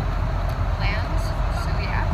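Steady low rumble of an airliner cabin in flight, with a voice heard briefly over it about a second in and near the end.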